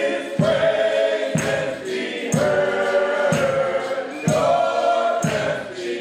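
Male gospel vocal group singing held chords in harmony, over a steady beat about once a second.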